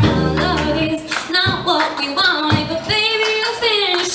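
Live band music: a woman singing long, wavering held notes over strummed acoustic guitar and a steady drum beat, with low bass notes in the first second.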